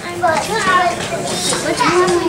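Several voices, children's among them, talking over one another in a busy crowd chatter.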